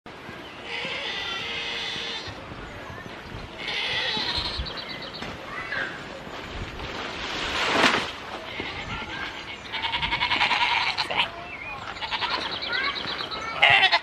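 Goats bleating several times, long wavering calls spaced a few seconds apart, the loudest one near the end.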